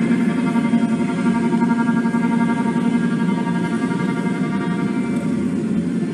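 A post-rock band playing live: a slow, sustained drone of layered guitar tones held at a steady level, with no beat standing out.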